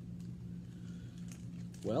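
Steady low electrical hum with a few faint clicks of a hardcover picture book being handled and closed. A man's voice begins near the end.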